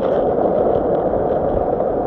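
Wind buffeting the camera microphone as the rider moves at speed, a steady loud rumbling rush with no engine note.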